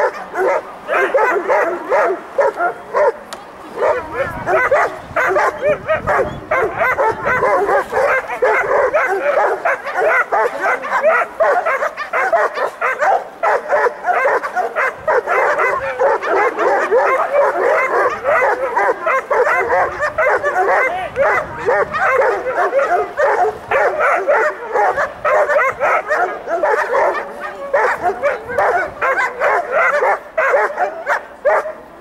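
German shepherd whining and yipping excitedly, almost without a break, in the high arousal of protection bite work.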